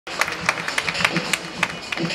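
Opening of an intro music sting: a quick, irregular run of sharp percussive hits like hand claps, over a faint low pulse.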